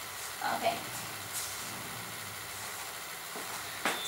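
A woman's brief "okay", then a steady faint hiss of room tone with a few soft ticks.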